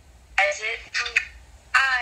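A person talking in two short bursts, with a thin, phone-like quality.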